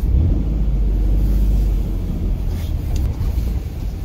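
Car engine and road rumble heard from inside the cabin as the car rolls forward at low speed. The deep rumble is strongest for the first two seconds or so, then eases.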